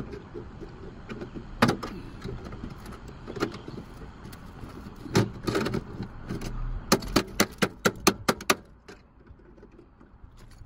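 A hand tool working on the metal of a junked car door: rustling and scattered knocks and clanks, then a quick run of about ten sharp clicks over a second and a half.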